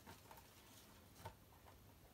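Near silence with a few faint taps and knocks of cardboard boxes being handled as a boxed figure is lifted out of a shipping carton; the clearest tap comes a little past the middle.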